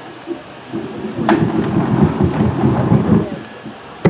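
Low, irregular rumbling and rustling of a microphone being handled on its stand, with a sharp knock a little over a second in.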